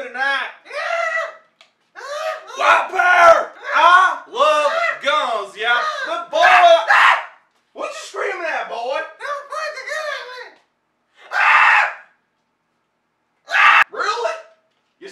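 Men yelling and screaming in loud, high-pitched bursts with short gaps between them, and a short breathy noise near the end.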